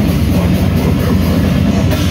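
Live death metal band playing loud: distorted guitar and bass over fast, dense drumming, heard as a steady wall of sound.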